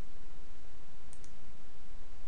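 Steady background hiss, with a faint computer mouse click about a second in as a colour is picked in the editor.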